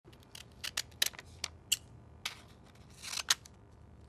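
An irregular series of sharp clicks, about a dozen in four seconds, with two short scraping sounds in the second half.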